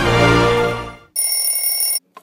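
Intro theme music that fades out about a second in, followed by a steady, high electronic ringing like a phone or alarm ringtone that stops abruptly.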